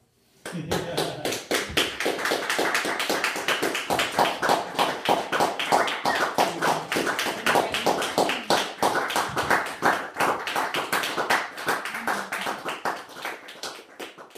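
Audience applauding at the end of a live performance, the clapping breaking out suddenly about half a second in and carrying on thickly before easing off near the end, with a few voices mixed in.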